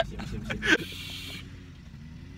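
A young man laughing in short bursts, followed by a brief breathy hiss, over a faint low steady hum inside a truck cab.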